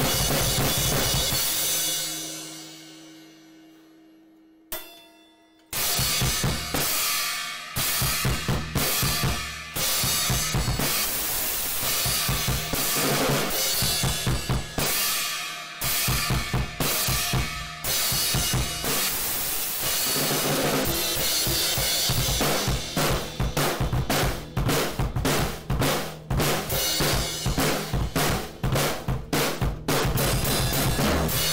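Drum kit played fast: kick drum, snare and cymbals in dense rapid patterns. About two seconds in, the playing stops and the sound dies away for a few seconds, with a single hit near five seconds. Fast drumming starts again at about six seconds and carries on.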